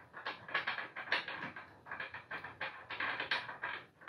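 The threaded cosmetic cover of a custom rifle muzzle brake being unscrewed by hand: a quick, irregular run of small clicks and scrapes, about four or five a second.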